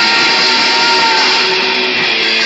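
Punk band playing live, heard as a loud, distorted wash of electric guitar and drums through an overloaded phone microphone, with a thin held tone wavering through it.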